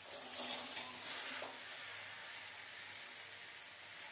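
A steel spoon gently stirring sugar-coated small gooseberries (amla) in a stainless steel pan over a low gas flame, as the sugar starts to melt. It makes a soft gritty scraping, busiest in the first second and a half, then settles to a faint steady hiss with one small click near the end.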